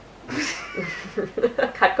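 A woman's short, high-pitched squeal with a falling pitch, followed by laughter in quick bursts.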